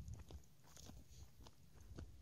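Near silence with a few faint, irregular crunches: footsteps on a dirt path strewn with dry leaves.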